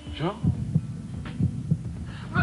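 A heartbeat sound effect: low double beats, lub-dub, repeating about once a second.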